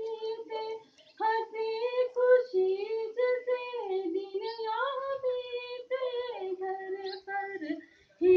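A woman singing a Hindi song solo into a microphone, with no accompaniment, pausing briefly about a second in.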